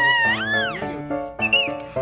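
A young baby's happy squeal, one long high cry that dips and then rises in pitch, followed by a shorter squeak about a second and a half in, over background music with steady chords.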